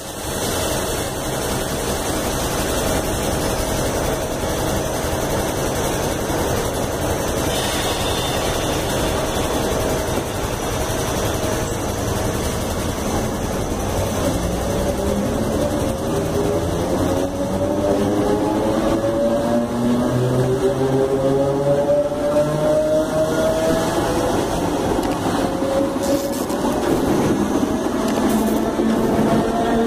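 CPTM Série 1700 electric multiple unit departing, with a steady rumble of wheels on rails. From about halfway through, the traction motors' whine rises steadily in pitch as the train gathers speed.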